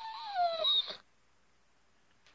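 A dog "singing": one drawn-out, high whining howl that wavers, drops in pitch near its end and stops about a second in.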